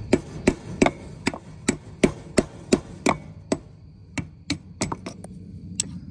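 Hammer blows knocking the ground-through lug nut and wheel stud out of a wheel hub: a steady run of sharp strikes, about three a second, that turn sparser and lighter after about three and a half seconds.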